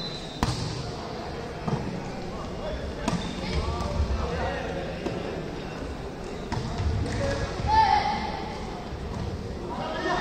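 Volleyball rally in an indoor sports hall: a few sharp slaps of hands and arms striking the ball, spread over the first few seconds and again later, amid echoing voices of players and spectators with occasional shouts.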